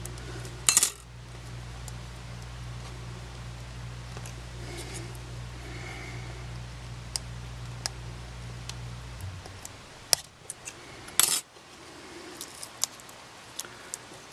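Sharp clicks and light taps of small plastic and metal camera parts being handled on a metal work surface, the loudest near the start and about eleven seconds in. A steady low hum underneath stops about nine seconds in.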